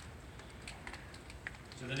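Scattered light clicks and taps of footsteps and shuffling as people walk across a large hall, over a low steady room hum; a man starts speaking near the end.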